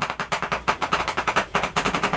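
Chalk writing on a blackboard: a fast run of sharp taps and scratches, many strokes a second.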